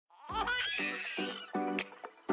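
Channel intro jingle: short, bright music with a baby giggling at the start, then repeated chords over a high shimmer and a sharp tick near the end.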